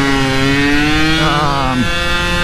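Small two-stroke motorcycle engine running under way at steady revs. Its pitch eases slowly down, then drops sharply near the end as the revs fall.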